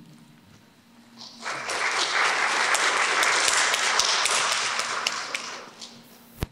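Audience applauding: the clapping starts about a second and a half in, holds steady, and dies away near the end.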